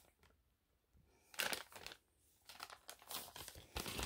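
Empty plastic snack bag crinkling as it is handled, with a short burst about a second and a half in and softer scattered crinkles after it.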